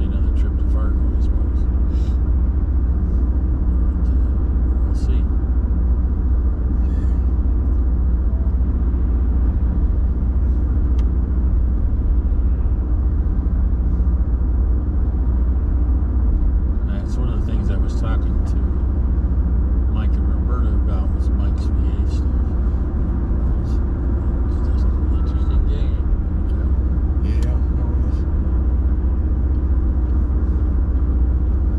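Steady low engine and tyre rumble inside a moving vehicle's cabin while driving at city speed, with occasional faint clicks.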